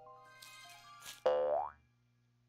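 Faint background music, then, a little past a second in, a short cartoon boing sound effect whose pitch rises quickly.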